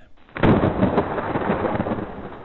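A thunderclap from a lightning strike: a sudden loud crack about a third of a second in, followed by a long rumble that slowly fades.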